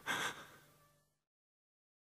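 A short, faint sound in the first half second that quickly fades out, then complete silence on the track.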